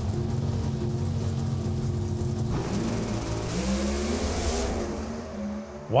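Two NHRA Pro Stock drag cars' naturally aspirated V8s holding steady revs on the starting line, then launching about two and a half seconds in and accelerating away, fading toward the end. One car's tyres break loose on the launch.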